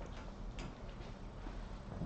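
A few scattered, irregular clicks of laptop keys and trackpad, faint over a steady low room hum.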